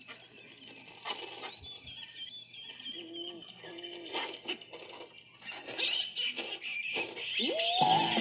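Animated-film soundtrack heard through a computer's speakers: cartoon animal sounds, clicks and a wavering high tone over music. Near the end a different cartoon's music comes in with a rising tone.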